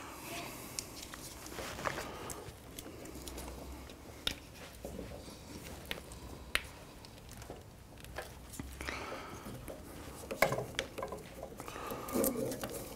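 Quiet handling noises: scattered light clicks and rustles of hands fitting a new ignition lead between the coil and the distributor.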